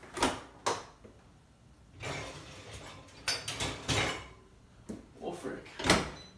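Kitchen cupboards and dishes being rummaged through: a series of knocks, clinks and a drawer or cabinet sliding, with dishware clattering in bursts about three to four seconds in and again near the end.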